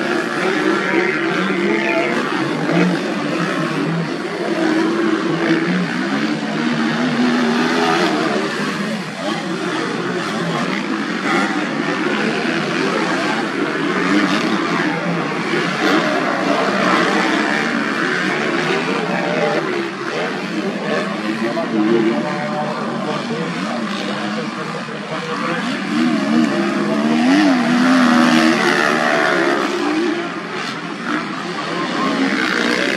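Several motocross dirt bikes riding the track, their engines revving up and down continuously with pitches rising and falling as they pass.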